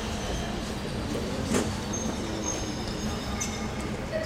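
Steady low rumble of city traffic and street ambience, with a single sharp click about one and a half seconds in.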